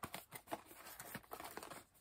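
Small cardboard gift box being handled and opened: a quick run of light clicks, scrapes and paper rustles.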